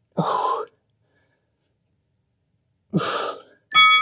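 A man's two breathy exhales, or sighs, while holding a deep stretch, each about half a second long, the first just after the start and the second about three seconds in. Near the end a steady high electronic tone begins.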